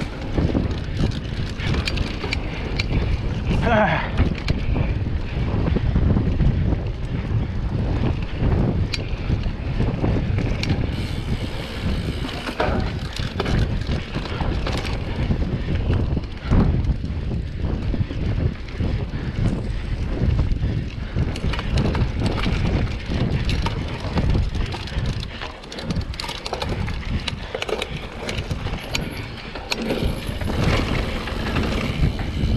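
Wind buffeting the microphone of a handlebar-mounted camera on a cross-country mountain bike ridden fast along a dirt singletrack, with the tyres and frame rattling over bumps in the trail. A brief rising squeak comes about four seconds in.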